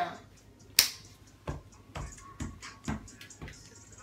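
Music with a steady beat leaking from a pair of over-ear headphones: low thumps with snap-like hits about twice a second. A sharp click comes about a second in.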